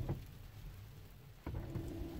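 Faint car-cabin noise, then about one and a half seconds in a low hum with a steady tone comes in: a Tesla Model 3's electric drive motor under a fully pressed accelerator while traction control holds the wheels from spinning in snow, so the car does not move.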